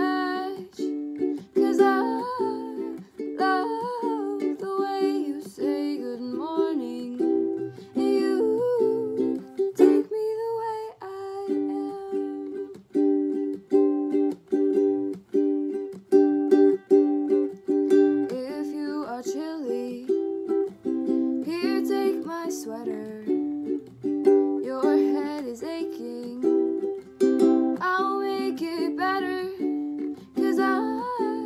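A girl singing over a strummed ukulele. The chords break off briefly about ten seconds in.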